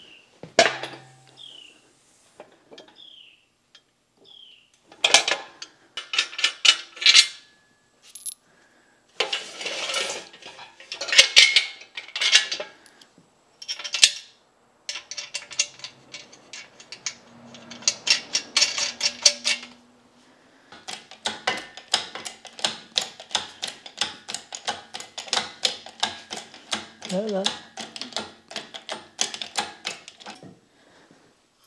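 Metal clanking and chain clinking as a shop engine hoist and its lifting chain are rigged to a cast-iron milling machine saddle. Separate loud clanks come in bunches, then a long run of quick rattling clicks follows in the last third.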